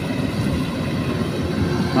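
Kubota DC-93 combine harvester's diesel engine running steadily some distance off while harvesting rice, a continuous low drone.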